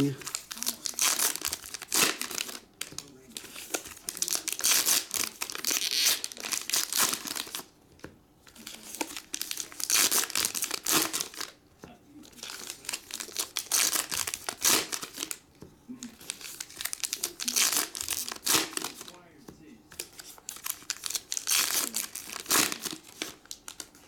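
Paper-and-foil baseball card pack wrappers being torn open and crinkled in the hands, in bursts of a few seconds with short pauses between.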